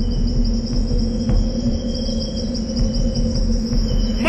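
Insects chirping in a steady high trill over a low, steady rumble.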